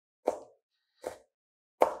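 A chef's knife chopping chili peppers on a cutting board: three separate chops about a second apart, the last the loudest.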